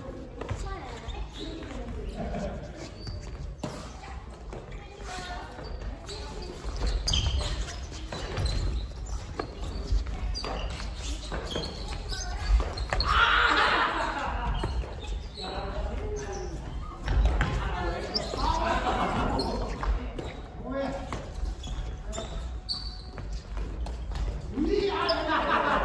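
Family badminton rally: sharp racket hits on the shuttlecock and footfalls on the wooden gym floor, with players' voices calling out, all echoing in the large hall.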